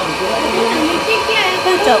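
Electric grinder's motor running steadily while steamed purple sticky rice is fed through it and extruded as a paste.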